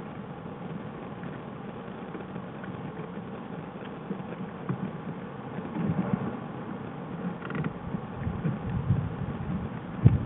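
Sounds of black bears close to the den-cam microphone: a steady hiss at first, then from about halfway a louder, irregular low pulsing.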